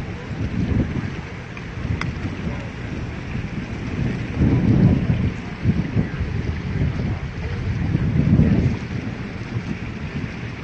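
Wind buffeting the microphone on a moving boat, a low rumble in gusts, loudest about halfway through and again near the end.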